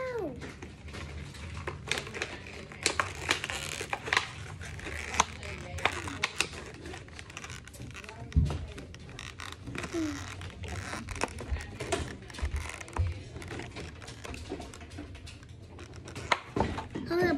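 Clear plastic blister packaging crinkling and crackling as it is pulled apart by hand, in irregular sharp crackles, with one louder dull knock about halfway through.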